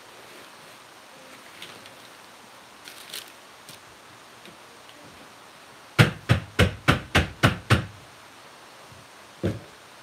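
A quick run of about eight sharp knocks, roughly four a second, then a single knock near the end: a filled soap loaf mold tapped on the table to settle the batter. Faint rustling of a paper towel comes before.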